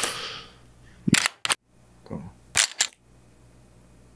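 A novelty toy gun disguised as a cigarette pack being triggered: two pairs of sharp snapping clicks, the first about a second in, the second about two and a half seconds in.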